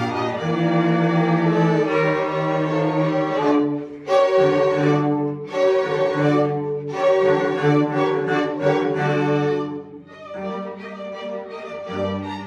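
Student string orchestra of violins and cellos playing together: sustained bowed chords, then shorter phrases separated by brief breaks, growing softer about ten seconds in.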